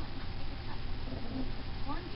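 A small dog gives one short rising whine near the end while playing with a plush toy, over faint low room noise.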